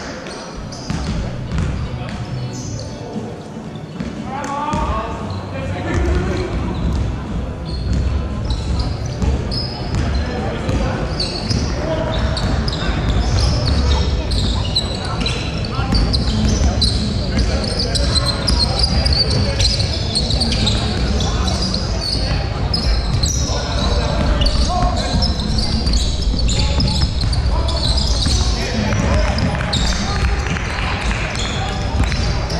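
Basketball game in a large gym: the ball dribbling on a hardwood court, players' footsteps and indistinct voices, all echoing in the hall. It grows louder over the first few seconds as play picks up.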